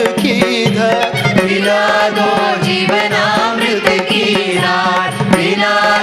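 Devotional song sung by a mixed group of men's and women's voices into microphones, the voices gliding between held notes over a steady drone, with light strokes of percussion.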